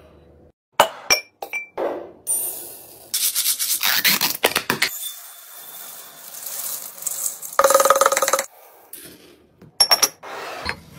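Hard items being handled and set down: a few sharp clinks with short ringing about a second in, then longer stretches of rubbing and rustling.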